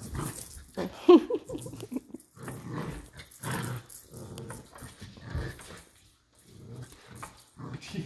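A puppy growling in short, irregular bouts as it plays tug with a string, pulling a small cat scratching post about.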